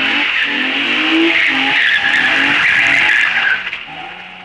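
Rear-wheel-drive Opel Omega doing donuts: its tyres screech continuously over an engine held at high revs in repeated pulses. The screech dies away about three and a half seconds in.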